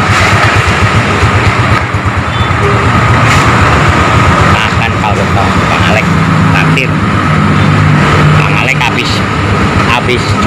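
Motor vehicle engine running steadily, with a man talking over it.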